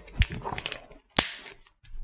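Handling noise at a desk: a few light clicks, then one sharper knock about a second in, as a marker is handled and hands are set down on the desk.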